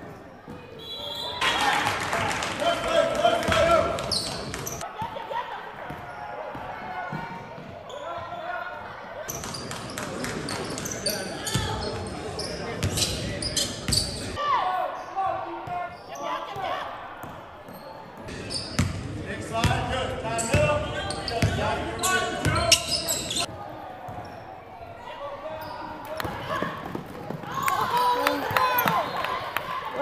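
Basketball being dribbled and bouncing on a hardwood gym floor during play, with indistinct voices of players and spectators in a large gym.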